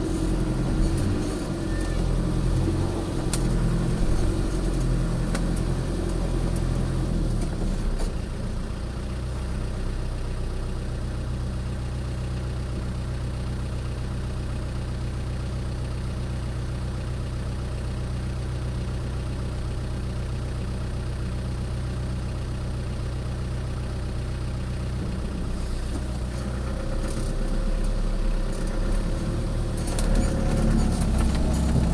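A 4x4's engine idling: a steady low hum, a little louder and less even for the first eight seconds or so, then very even, swelling slightly near the end.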